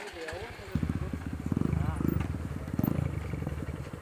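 Close-up dirt bike engine running with rapid firing pulses. It picks up loudly about a second in and revs up and down in several swells.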